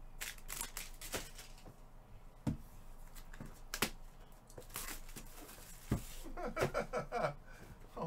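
Gloved hands picking up and opening a cardboard trading-card box: scattered knocks and taps of the box against the table, with short bursts of rustling and tearing of cardboard and wrap. A faint voice comes in near the end.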